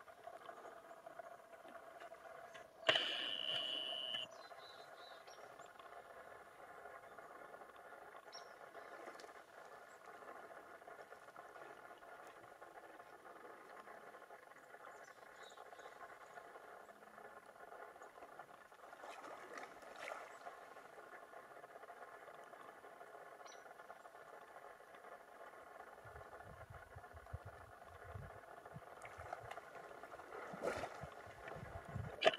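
Faint outdoor ambience at a pond, with a steady background of thin tones, broken by one sudden loud sound lasting about a second near the start. Water sloshes near the end as an elk wades through the shallows.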